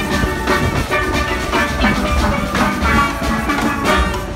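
A marching steel band playing steel pans together: many pans strike quick, ringing notes over a pulsing low beat.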